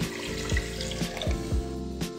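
Water poured in a stream into a pressure cooker holding rice, moong dal and milk; the pour stops partway through. Background music with a steady beat plays underneath.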